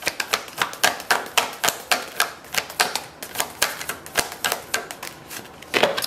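A deck of tarot cards being shuffled by hand: a quick, irregular run of card clicks and slaps, about four or five a second.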